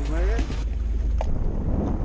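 Wind rumbling and buffeting on the microphone aboard an open bass boat, a steady low roar. A man's voice trails off in the first half second.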